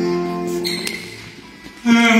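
Live acoustic guitar and ukulele music: a strummed chord rings out and fades, then the playing comes back in loudly near the end.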